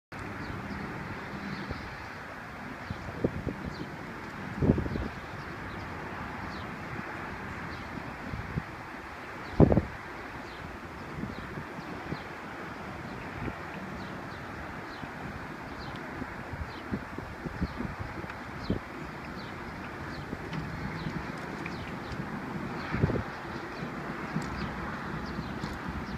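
Outdoor ambience: a steady hum of distant traffic, with wind buffeting the microphone in three short low gusts, about five seconds in, about ten seconds in and near the end. Faint high ticks come and go throughout.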